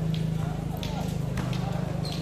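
A basketball bouncing on a concrete court, a sharp knock about every two-thirds of a second, over a steady low hum and background chatter.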